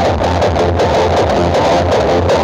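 Loud music with heavy bass, played through huge outdoor sound-system speaker stacks.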